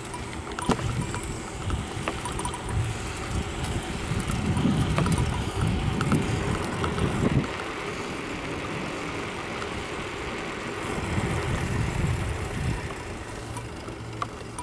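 Wind buffeting the microphone and tyre noise on asphalt from a bicycle ride, a low rumble that swells twice, with a few light rattles and clicks from the bike.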